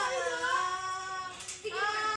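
High singing voice, like a child's, holding long notes that glide slowly in pitch, with a brief break about a second and a half in before the next note begins.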